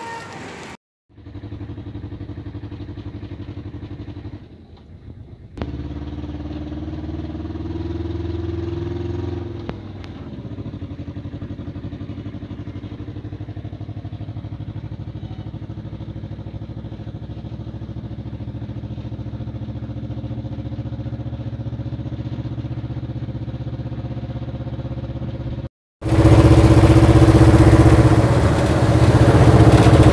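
Engine of a small goods truck running as it drives, heard from inside the cab. Its pitch climbs for a few seconds and then drops about ten seconds in, then stays steady.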